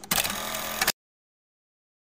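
A harsh, buzzing burst of noise just under a second long, starting and stopping abruptly, then dead silence: an edit transition sound at a cut to a section title card.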